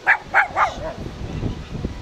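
Three short, sharp animal calls in quick succession within the first second, about a quarter second apart.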